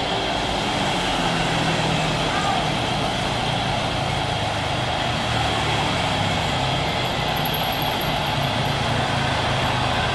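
Jet engines of a landing Airbus A320 airliner during touchdown and rollout: a steady rushing noise with a whine running through it.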